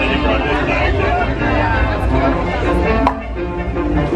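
Background music and crowd chatter over a steady low rumble, with one sharp click a little after three seconds in.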